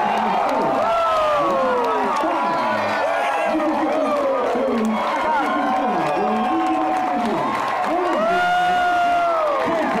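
Large crowd of baseball fans cheering and shouting in the stands, many voices yelling over one another, with nearby fans' yells rising and falling; one voice holds a long high yell near the end.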